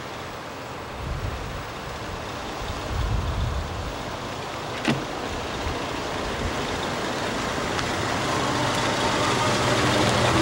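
Car engine running and tyres rolling as a vintage-style convertible drives up, the sound growing steadily louder toward the end. A short click about five seconds in.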